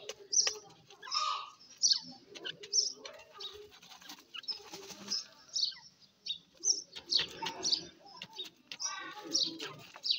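Grey francolins giving short, irregular chirps and calls, with bursts of feather flutter as a bird shakes itself in the dirt.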